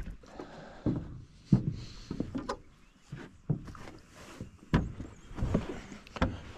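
Irregular thumps and clunks, about six in a few seconds, from gear and feet knocking against the deck and hull of a jon boat as fishing rods are handled.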